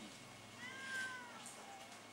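A cat meowing once: a single drawn-out meow, about a second long, that rises and then falls in pitch, played back through a television.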